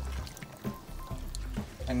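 Rice and chicken in hot broth being stirred with a spatula in a pot, liquid sloshing and simmering, with background music playing over it.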